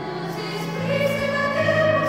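A children's and teenagers' choir singing held notes, growing louder a little under a second in as it moves to a new note.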